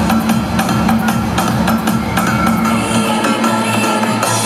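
Loud cheerleading routine music with a steady drum beat; the deep bass drops out near the end.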